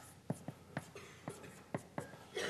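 Chalk writing on a blackboard: a run of short, sharp taps and strokes, about four a second.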